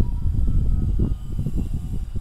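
Wind rumbling on the microphone, with a faint thin whine from the electric motor of a 1400 mm RC Cessna 182 flying overhead that fades out after about a second and a half.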